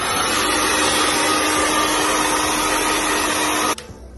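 Handheld Vega hair dryer running: a loud, steady rush of blown air with a faint motor hum, cutting off suddenly near the end.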